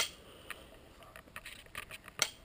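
A single sharp click right at the start, then a few faint scattered clicks of handling.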